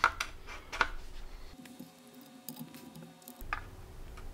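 Electrolytic filter capacitors being handled and their leads pushed into a printed circuit board: a few light clicks and small handling noises.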